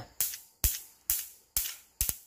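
Electric mosquito swatter racket arcing to a steel utility-knife blade held to its charged grid: four sharp electric zaps about half a second apart, each dying away quickly. A strong discharge, each touch giving a crisp snap.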